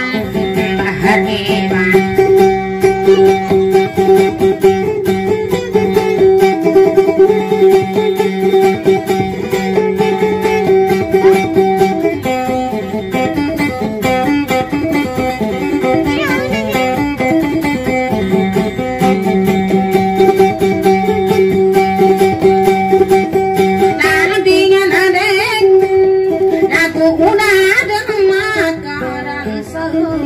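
Electric guitar played in a repeating plucked pattern over steady ringing bass notes, as accompaniment for Maranao dayunday sung verse. A singing voice comes in briefly near the end.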